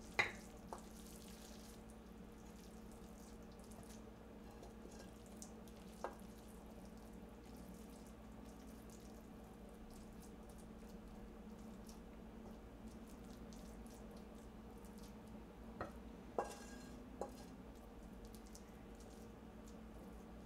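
A wooden spatula scraping and tapping against a metal frying pan as kimchi fried rice is scooped out onto a plate: a few scattered knocks, one right at the start, one about six seconds in and a small cluster near the end, over a faint steady hum.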